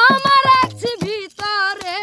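A boy singing a Bengali baul folk song in a high voice, holding and bending long notes, with drum strokes beneath.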